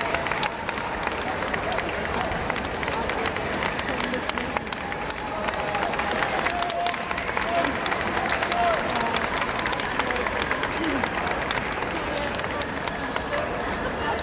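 Crowd noise in a large hall: indistinct chatter with scattered hand-clapping.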